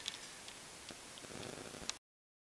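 Faint scattered clicks over a low hiss, the loudest a sharp click just before the end.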